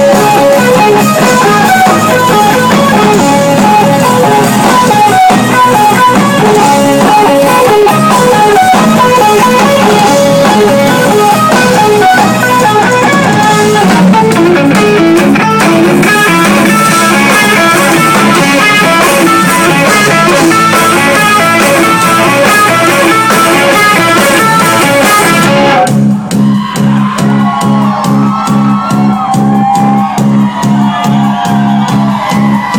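Live new wave rock band playing loudly, an electric guitar lead line over bass and drums. About 26 seconds in the higher instruments drop out, leaving a pulsing, bass-heavy groove.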